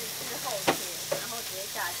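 Beef patty, buns and an egg sizzling steadily on a stainless-steel flat-top griddle. A single sharp click sounds about two-thirds of a second in.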